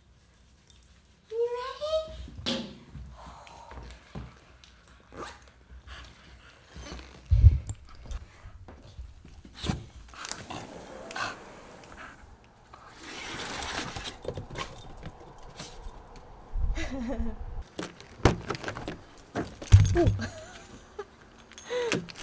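Small metal items jingling, along with short vocal sounds and several thumps and clicks as things are handled.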